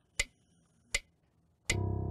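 Metronome ticking steadily at about 80 beats a minute, three clicks, then near the end a loud chord struck on a digital piano that keeps ringing.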